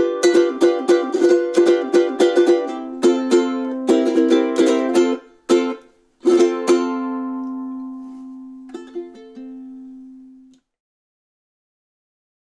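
High-G ukulele strummed in a quick, even rhythm, then slowing to a few strums. It ends on one chord that rings out for about four seconds and then cuts off.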